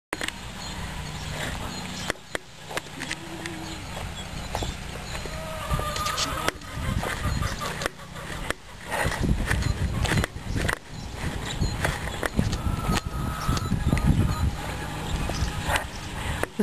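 A few short, faint goat calls over steady outdoor noise.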